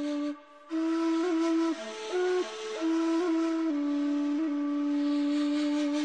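Background music: a slow flute melody of long held notes that step gently up and down, with a brief break just after the start.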